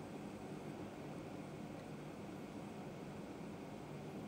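Faint steady hiss of room tone and microphone noise, with no distinct sound.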